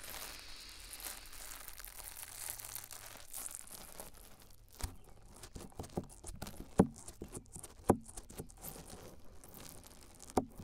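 Wet spoolie brush rubbing inside the silicone ear of a 3Dio binaural microphone: a steady close brushing for about four seconds, then scattered sharp clicks and pops, the two loudest a second apart just past the middle.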